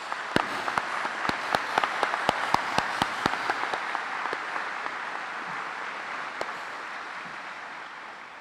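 Audience applauding, with sharp single claps standing out close by through the first half; the applause slowly dies away toward the end.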